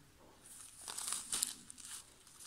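Faint crinkling of a small plastic zip-lock bag of glass drop beads as it is turned in the fingers, in scattered crackles from about half a second in until near the end.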